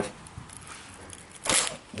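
A lead knife cutting down through the soft lead came of a leaded glass panel. The cut is faint at first and ends in one short, sharp crunch about one and a half seconds in.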